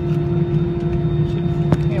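Steady drone inside an Airbus A320-200's cabin on the ground, a constant hum carrying a few fixed tones from the aircraft's engines and air systems. A single sharp click comes near the end.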